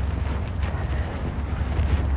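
Wind buffeting the microphone: a steady low rumble with a hiss above it.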